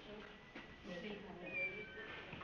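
Faint background voice with drawn-out, wavering vocal sounds from about half a second in.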